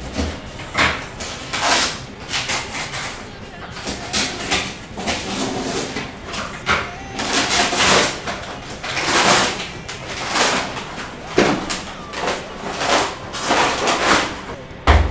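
A cardboard shipping box is being opened by hand, with its packing tape and cardboard torn and its brown paper padding rustled and crumpled. The sound comes as irregular short ripping and crinkling bursts, one or two a second.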